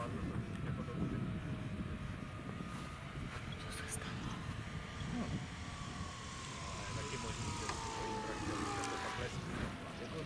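Whine of a model aircraft's electric motor and propeller, most likely the electric Piper J-3 Cub tow plane, sliding slowly down in pitch through the second half. It sits over a steady rumble of wind on the microphone.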